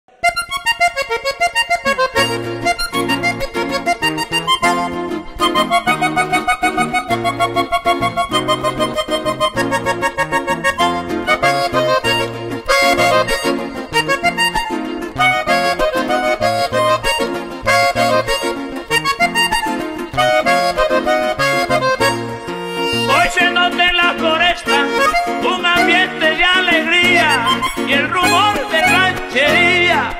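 Diatonic button accordion playing a fast vallenato melody over regular bass-button chords. In the last several seconds the melody moves to higher, held notes that waver in pitch.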